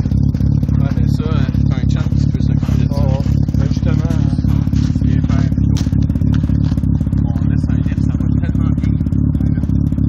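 Mazda RX-7's twin-rotor rotary engine running at a steady idle through its twin-tip exhaust, loud and low with a rapid, even pulse.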